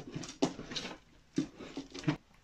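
A hand scooping and spreading loose substrate of coco fibre, sand and orchid-bark chips in a glass terrarium, giving a few short rustling scrapes.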